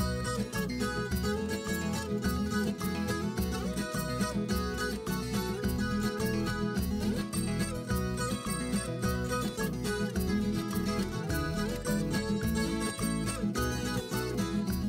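Instrumental background music with plucked guitar over a steady beat.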